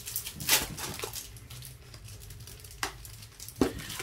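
Foil booster-pack wrappers crinkling as the packs are handled and shuffled, a few short rustles over a quiet room, the clearest about half a second in and again near the end.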